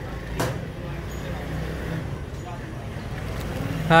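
Street background noise with a vehicle engine's steady low hum running under it, and one sharp click about half a second in.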